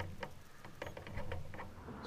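Faint, irregular ticks and light patter of small water lapping against the hull of an outrigger canoe sitting on calm water.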